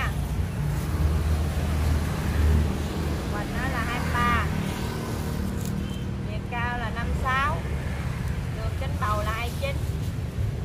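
Short stretches of a woman's voice over a continuous low rumble, the rumble heaviest in the first two and a half seconds.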